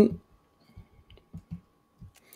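A few faint, short clicks, spread over about a second, against a faint steady hum.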